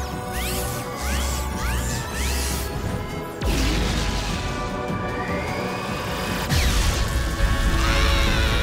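Cartoon action sound effects of superpowered energy blasts, with many short sliding zaps, whooshes and crashing impacts over a dramatic music score. A heavier low crash comes about three and a half seconds in, and the sound swells again near the end.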